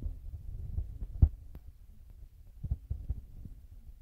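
Low, dull thumps over a rumble: the loudest comes a little past a second in, and two more come close together near three seconds.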